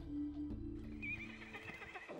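Background film music with sustained notes fading out, then a high, wavering horse whinny in the second half.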